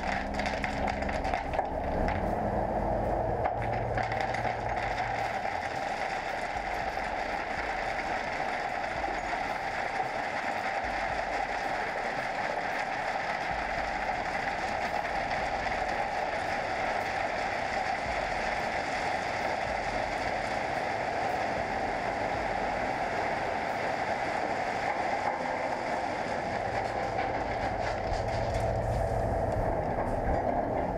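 Tipper lorry unloading 40–160 mm river pebbles: a continuous rattling rush of stones sliding off the raised bed onto the growing pile, with the lorry's engine rumbling underneath, a little stronger near the start and near the end.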